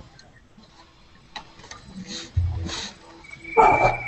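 A phone ringing: a high, steady, trilling electronic tone that starts about three seconds in. It comes with short breathy noise bursts and a low thump on the call's microphone, the loudest just after the ring begins.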